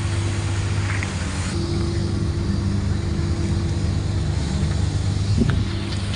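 Auto-rickshaw engine idling close by, a steady, even hum that cuts in suddenly at the start.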